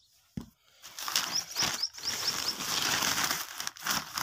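A thump, then a loud, rough rustling noise for most of the clip. Over it a small bird chirps about six quick notes in a row.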